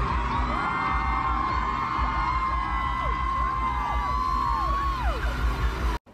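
Live pop concert heard from inside the crowd: many fans screaming and whooping, short rising-and-falling shrieks over a held note from the stage and a pulsing bass. It cuts off abruptly at the end.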